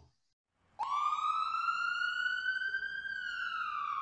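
Siren-like sound effect: a single tone that starts about a second in, rises slowly for about two seconds, then falls.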